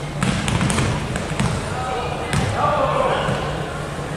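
A basketball bouncing on a hardwood gym floor, a quick run of bounces in the first half and another a little past halfway, with players' voices calling out after that.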